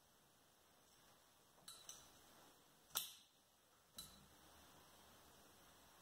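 Near silence broken by four light clicks and taps from flower stems being handled and set into the arrangement, the loudest about three seconds in.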